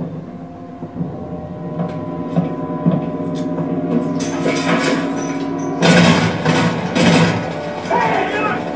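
A TV drama's soundtrack playing from a television speaker in the room: a sustained, tense music score with a few faint clicks, then loud noisy action sounds from the halfway point that are loudest near the end.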